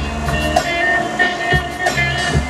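Hip-hop music: a beat with deep bass and repeated drum hits under sustained tones.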